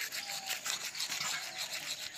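Manual toothbrush scrubbing teeth in quick, repeated back-and-forth strokes.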